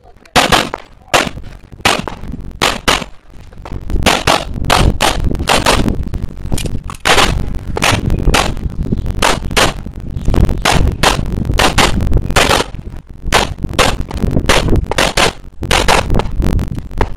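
Handgun shots fired rapidly in pairs and longer strings, with short gaps between groups.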